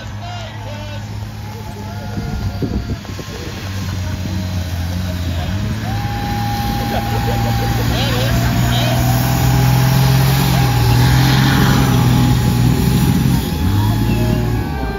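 Diesel engine of a lifted off-road wrecker truck running hard under heavy load as it pulls against another vehicle on a strap. The engine grows steadily louder over the first ten seconds, then holds.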